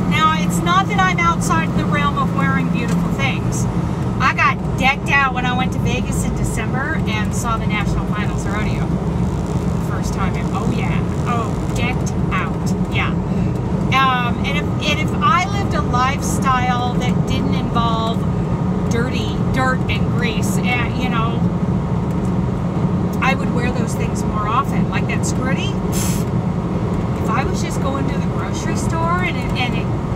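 Steady engine and road drone inside a moving semi-truck's cab, with a woman's voice carrying on over it.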